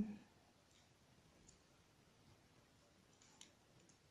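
Near silence with a few faint clicks of metal knitting needles working the yarn, the clearest about three and a half seconds in.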